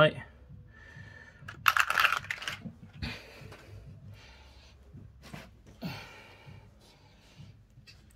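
A clear plastic packet of .22LR polymer snap caps being handled: the packet crinkles and the caps click against each other in a few short bursts, the loudest about two seconds in.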